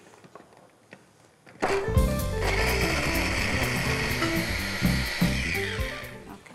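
Electric mini chopper's motor whirring as it grinds walnuts into a fine powder, starting about a second and a half in and running steadily for about four seconds, its whine falling in pitch as it stops near the end.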